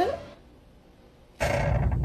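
A drawn-out spoken exclamation trails off at the start, followed by about a second of very quiet dead air. Steady room noise cuts back in suddenly, with a few faint ticks near the end.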